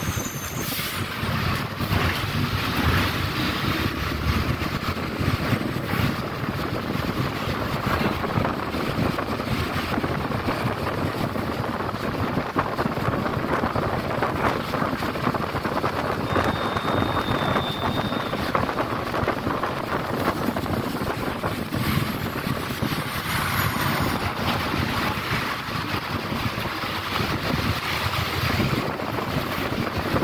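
City bus in motion, heard from inside: a steady noise of the running engine and tyres on a wet road. A brief high tone sounds about halfway through.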